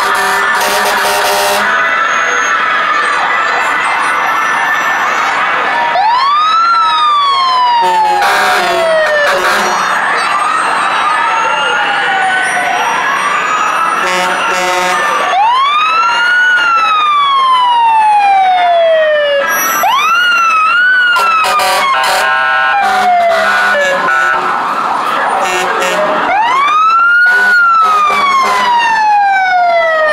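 Fire truck sirens wailing several times as the engines pass. Each wail winds up quickly and slides slowly back down. Short blasts of steady horn tones sound in between.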